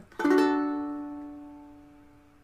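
A single strum of a full D chord on a ukulele, struck about a fifth of a second in and left to ring, its notes fading away steadily.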